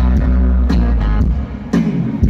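Rock band playing live through a stadium PA: electric guitars over a held bass note, with drum hits about two-thirds of the way in and near the end. Heard from within the crowd on a phone microphone.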